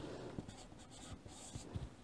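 Chalk writing on a chalkboard: faint scratching strokes as characters are drawn and marked.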